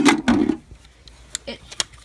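A toy revolver being picked up off a wooden table and handled close to the microphone: a loud rustling scrape, then a few sharp clicks.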